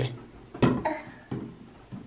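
Four short plastic clicks and taps, the loudest about half a second in, as a small child handles a plastic spray bottle and a toothbrush.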